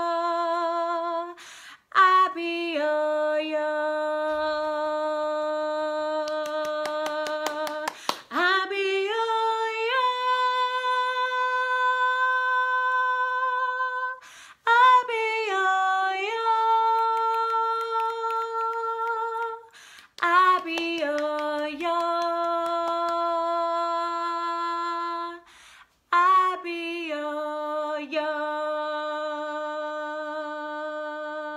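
A woman singing unaccompanied in a call-and-response exercise. She sings short phrases, each a few quick notes and then a long held note of about five seconds, with brief breaths between them: a held note ending about a second and a half in, then five more phrases.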